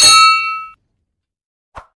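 A bright bell-like ding from a subscribe-button notification sound effect. It strikes at once and rings for under a second. A short click follows near the end.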